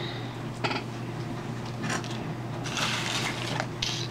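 Plastic doll packaging crinkling and rustling in a few short bursts, with a longer stretch of crackling about three seconds in.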